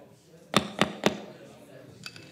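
Three sharp thumps on a handheld microphone, about a quarter second apart, the way a mic is tapped to check that it is live; a faint click follows near the end.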